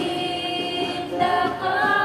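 A small group of voices singing together in the Mandaya language, holding long notes and moving to a higher note a little past the middle.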